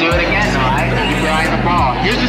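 A person's voice talking over background music with a steady low bass line.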